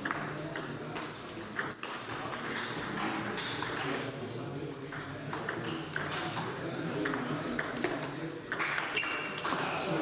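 Table tennis ball clicking back and forth in a rally, struck by the bats and bouncing on the table, one player's penhold bat faced with long-pimpled rubber.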